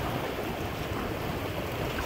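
Steady wind and water noise around a small sailboat moving on the river.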